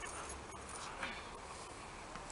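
Faint scuffing and rustling as a person climbs onto a concrete ledge on hands and knees, with a small click about a second in, over quiet outdoor background noise.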